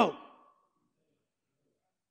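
A man's voice trailing off at the end of a word, falling in pitch, in the first moment, then near silence.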